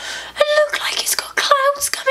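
Speech only: a woman talking in a high, strained, partly whispered voice.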